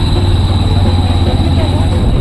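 A steady, loud, low machine-like drone, with indistinct voices and music mixed in.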